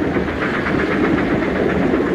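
A moving train, heard as a steady noisy rush with most of its sound low down.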